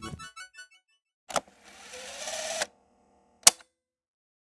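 Logo-sting sound design: the last notes of a music cue echo away, then a short hit, a rising whoosh that cuts off suddenly, and a sharp final hit, the loudest sound.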